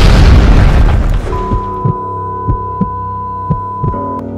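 A loud explosion, a homemade bomb going off, hitting at the start and fading over about a second and a half. Music carries on beneath it, with one held high note and a soft regular beat after the blast dies away.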